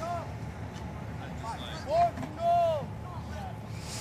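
Distant voices of players calling out across the field: two short shouts about two seconds in, the second one longer, over a steady outdoor background hiss.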